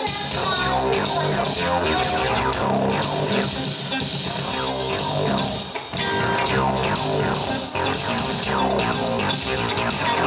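Live band playing an instrumental passage on electric guitars and keyboards. There is a brief dip in the sound a little past halfway.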